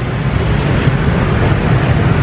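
City street traffic noise: a steady low rumble of passing vehicles.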